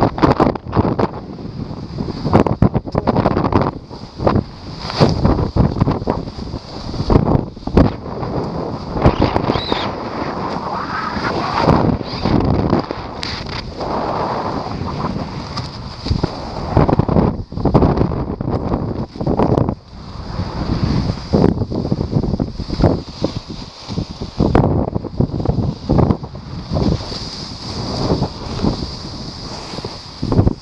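Wind rushing and buffeting over the microphone in irregular gusts, with frequent sudden loud swells, during a fast descent under a paraglider's deployed reserve parachute.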